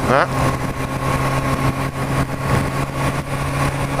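Motorcycle engine running steadily at highway cruising speed, with wind and road noise on the microphone.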